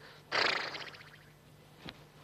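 A man imitating a horse: a breathy rush of air, like a horse blowing out, that fades over about half a second. A short click comes near the end.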